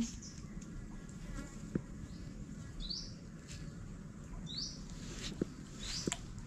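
Creekside wildlife chirping: short, high calls that rise in pitch, about four of them spread over a few seconds, over a faint steady background, with a couple of light clicks.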